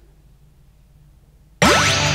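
Near silence, then, near the end, a sudden loud edited sound effect with a fast rising sweep that rings on into held musical tones, opening an animated title sting.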